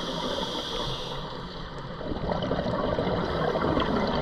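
Scuba regulator breathing heard underwater: a hiss of inhaled air through the regulator in the first second, then a low, gurgling rush of exhaled bubbles from about two seconds in.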